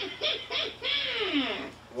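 A recorded laugh played back through small speakers from a CAR/P 300 audio recorder/player board, set off by connecting its trigger wires. It starts with a few short bursts of laughter, then a long laugh that falls in pitch.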